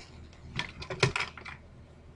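Plastic lid being pulled off a glass blender jar: a quick cluster of clicks and knocks about half a second to a second and a half in.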